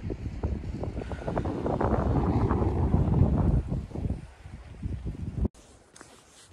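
Wind buffeting the microphone in gusts, a heavy low rumble that eases off after about four seconds and then cuts out abruptly near the end.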